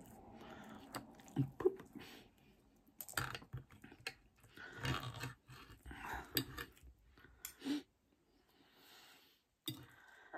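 Close-up chewing of a mouthful of food, with the knife and fork clicking and scraping on the plate in irregular short bursts.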